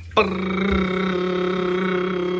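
A single steady, buzzy tone held for about two seconds without any change in pitch, starting just after the beginning: an edited-in sound effect building suspense before a quiz answer is revealed.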